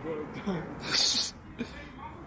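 A man laughing, with a sharp, hissy burst of breath about a second in and a shorter one just before the end.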